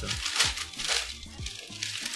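Tissue paper crinkling in a few short rustles as hands fold it back from sneakers in a shoebox, over background music with a steady beat.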